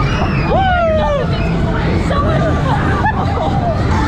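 Riders on a spinning fairground ride: a long squeal starts about half a second in, rises and then slides down in pitch, and shorter cries and a babble of voices follow. Under them runs the ride's steady rumble.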